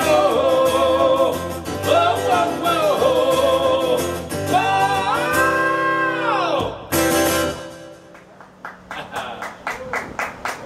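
Man singing with strummed acoustic guitar, ending the song on a long held note about six and a half seconds in that bends down and stops. A last guitar strum follows, then light scattered clapping from a small audience.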